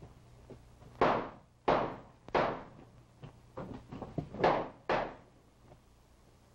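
A fight in a small room: five loud, sudden thuds and bangs in quick succession as bodies and furniture are struck during the struggle.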